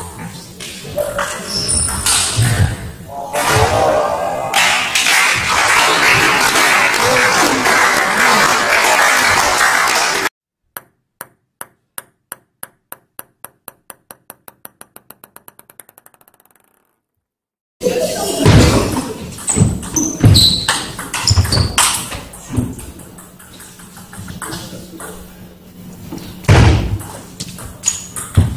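Table tennis ball sharply struck and bouncing on the table, then several seconds of loud, even rushing noise. Then a clean, isolated ping-pong ball bounces on a hard surface, the bounces getting quicker and fainter until it settles, with silence around it. After that, ball-on-bat and ball-on-table clicks in a large hall.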